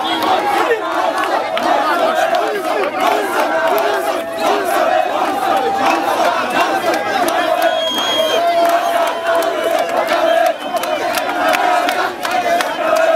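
Dense crowd of football fans shouting and cheering close around, many voices at once. A long steady held note runs through the middle of the noise.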